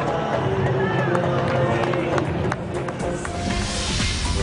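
Background music with held notes over crowd noise from the stadium. The noise grows louder near the end.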